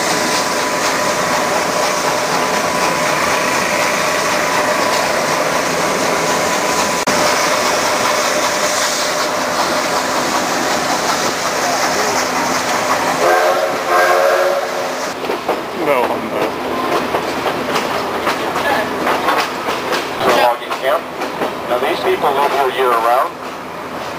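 Steam-hauled passenger train running, heard from an open coach: steady rumble and clatter of wheels on rail with a steady high squealing tone on the curve. About halfway through the locomotive's steam whistle sounds one short chord-like blast, after which the running noise turns more uneven and clattery.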